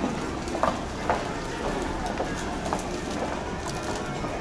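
Busy indoor shop-floor ambience: a steady murmur of voices with scattered footsteps on a hard tiled floor.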